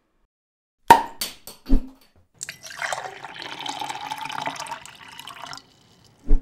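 A sharp crack about a second in, then a few clicks and a low thump. After that, liquid pours into a glass for about three seconds: the channel's beer-pouring intro sound.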